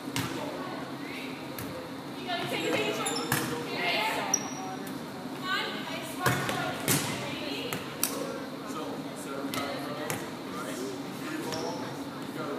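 A volleyball hit several times with sharp slaps during a rally, including a spike at the net about six seconds in, echoing in a large gym. Players' voices call out between the hits.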